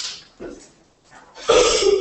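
A woman coughing once into her hand close to a microphone: a short, loud burst about one and a half seconds in, after a few faint small sounds.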